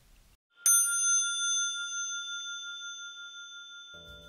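Brass dome bicycle bell rung once with its thumb lever: a single bright ding that rings on in several clear high tones, fading slowly. It sounds dry, in a semi-anechoic room.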